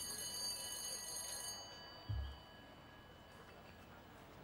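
A show-jumping arena's signal bell rings steadily and cuts off about one and a half seconds in, typical of the judges' signal to start a round. A brief low thump follows about two seconds in.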